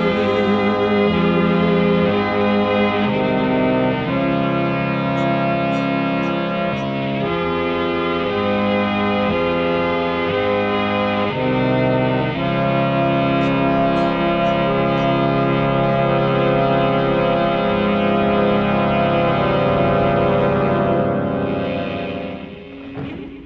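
Instrumental passage of a live band with no singing: a bowed violin holds long notes over keyboard chords and electric guitar, the chords changing about once a second. The music dies away near the end.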